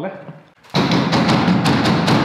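Hand slapping and drumming on the floor panel of the car's cargo bed, a loud, clattering din with several sharp hits a second, starting just under a second in. A big noise that shows how much the bare bed panel resonates before sound deadening is glued on.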